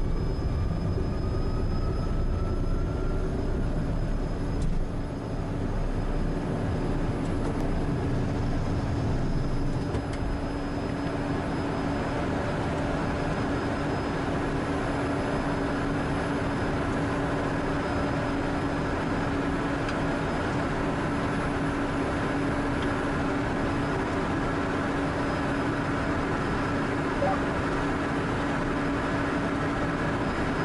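Cessna Citation M2's twin Williams FJ44 turbofans at takeoff power, heard inside the cockpit. A whine rises in pitch over the first few seconds over a low rumble from the roll, and the rumble eases about ten seconds in, leaving a steady engine drone with a steady hum through the climb.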